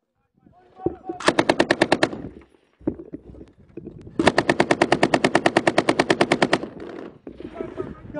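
Belt-fed machine gun fired right beside the microphone in two automatic bursts: a short burst of about a second, then after a pause a longer burst of about two and a half seconds, at roughly a dozen rounds a second.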